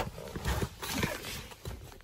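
A few irregular light knocks and clicks, with a louder low thump at the start.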